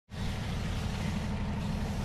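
Steady low rumble of a train's engine, fading in at the very start and holding level, with a faint hiss above it.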